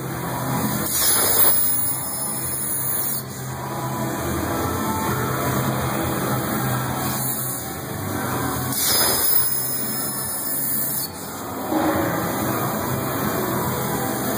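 Messer CNC cutting machine's torch burning through steel plate: a steady hissing rush over a low machine hum, its level rising and falling a few times.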